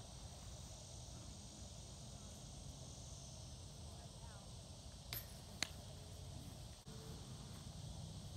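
Faint outdoor ambience: a steady high insect drone over a low rumble, with two sharp clicks about half a second apart a little past the middle.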